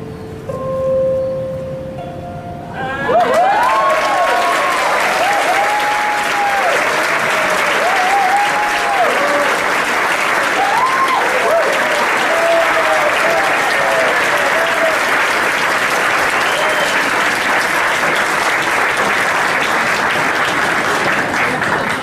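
The last held note of a live song, then an audience breaking into loud, sustained applause about three seconds in. Shouts of cheering rise over the clapping for the first dozen seconds or so.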